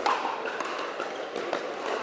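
Ambience of a large indoor pickleball hall: a steady hubbub broken by a few sharp pops of paddles striking plastic balls, echoing in the hall.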